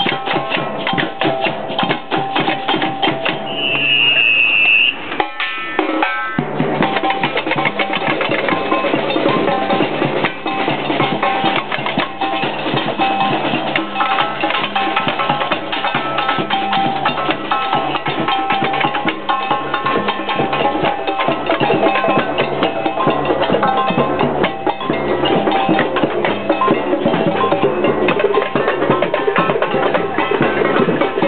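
Street-parade percussion: several drums and hand percussion playing a busy, steady beat, with a short high shrill tone about four seconds in.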